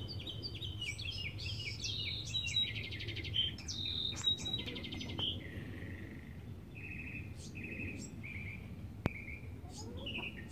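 Songbirds chirping and trilling in quick, varied phrases, some in fast runs of repeated notes, over a steady low hum. A single sharp click comes about nine seconds in.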